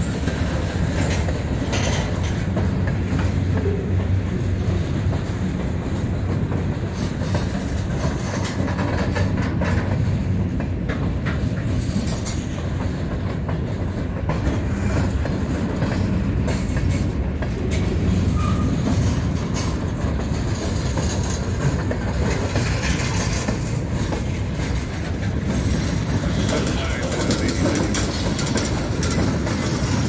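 Freight train tank cars and covered hopper cars rolling past close by: a steady rumble of wheels on rail with a running clickety-clack of wheels over the rail joints.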